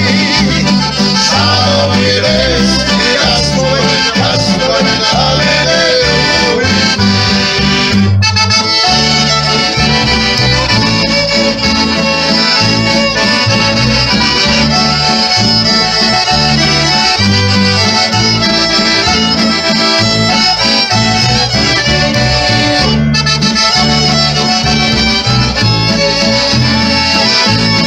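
A small folk band plays a lively traditional tune to a steady beat: piano accordion, strummed acoustic guitar, plucked double bass and violin. A man sings over the first part, and after a short break about eight seconds in the accordion leads.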